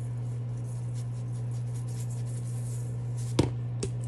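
Seasoning shaken from a shaker onto raw chicken drumsticks in a stainless steel pot, a faint patter over a steady low hum, with two sharp taps near the end.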